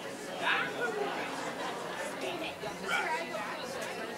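Congregation chatter: many overlapping voices of people greeting one another at once, a steady hubbub of conversation.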